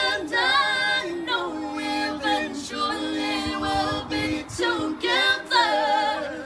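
Unaccompanied a cappella singing: a young woman's lead voice with men's voices joining in harmony, sung in phrases with long held notes that waver with vibrato.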